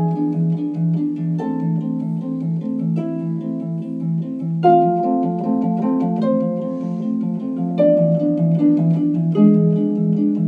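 Concert harp playing a fast, even, repeating arpeggiated figure in its low register, with the higher notes above it changing about every one and a half seconds.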